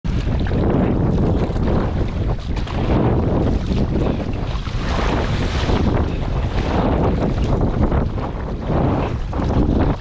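Wind buffeting the microphone with a heavy low rumble, over water splashing in surges every second or two as the paddles of an inflatable tandem kayak dig into choppy sea.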